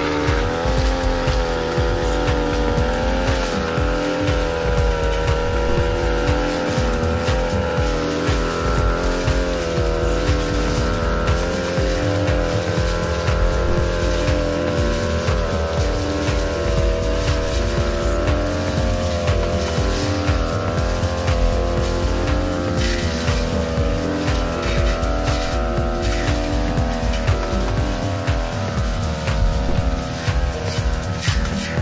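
Backpack brush cutter engine running at high revs, its pitch wavering slightly as the 45 cm steel blade cuts through young grass.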